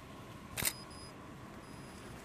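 A camera shutter clicks once, sharply, about half a second in, followed by faint, thin high tones that come and go.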